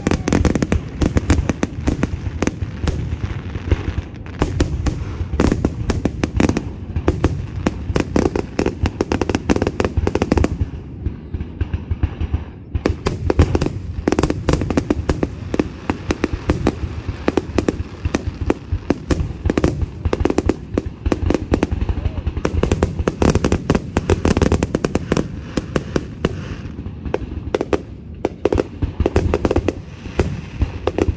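Aerial fireworks display: a dense barrage of shell bursts and crackling reports, many per second, thinning briefly about eleven seconds in before building again.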